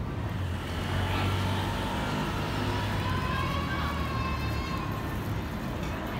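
City street traffic: a vehicle engine's steady low rumble, with a faint whine that rises slowly in pitch in the middle.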